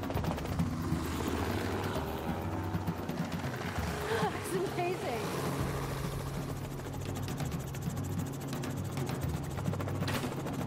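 Helicopter in flight, its engine and rotor running steadily, with a brief voice about four to five seconds in.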